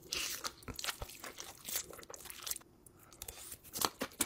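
Close-up eating sounds of instant ramen noodles being slurped in and chewed: an irregular run of quick wet smacks and clicks from the mouth.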